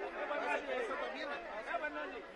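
Several people talking over one another in indistinct chatter, with no single voice standing out.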